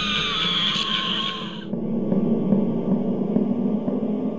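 Halloween ghost light-switch cover playing its spooky sound effect through its small speaker: a tone that slides slowly down in pitch and cuts off suddenly under two seconds in, leaving a low steady hum.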